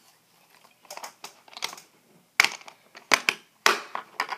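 Husky plastic waterproof box being shut: light ticks of handling in the first half, then several sharp plastic clicks and knocks in the second half as the lid comes down and is clipped shut.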